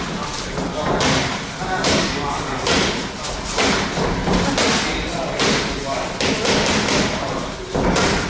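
Boxing gloves striking a coach's focus mitts in a steady rhythm of about one sharp smack a second.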